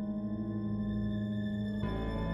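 Background music: a sustained drone of steady held tones, with a fuller low layer coming in near the end.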